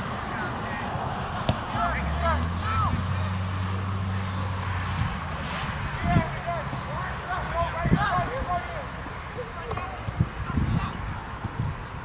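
Distant shouts and calls from players across an outdoor soccer field, in short bursts about two seconds in and again near eight seconds, over a steady outdoor background. A few sharp knocks of the ball being kicked are heard, and a low hum runs for a few seconds early in the clip.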